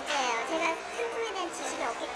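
Speech: a woman talking in Korean, with room chatter behind.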